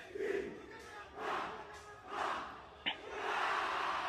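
A large group of Indonesian army soldiers shouting a yel-yel military chant together, heard faint, in several swelling shouts about a second apart. There is a short sharp click near the end.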